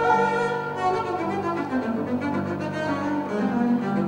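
Bowed double bass with grand piano accompaniment in classical chamber music: a held higher note at the start, then a quick run of lower notes from about halfway.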